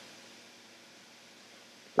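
Faint steady hiss of room tone and recording noise, with no distinct sound events.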